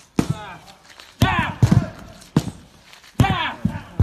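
A sledgehammer striking a tyre in repeated blows, roughly one a second, each hit a short sharp knock.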